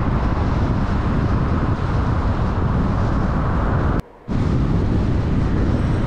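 Steady road and engine noise of a car driving at speed on a highway, with a brief drop to near silence about four seconds in.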